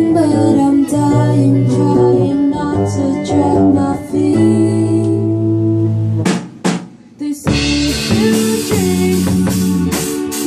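Live rock band playing: electric guitars and electric bass holding chords over a drum kit. About six seconds in the band drops almost out for a second, with a couple of drum hits, then comes back in fuller with cymbals.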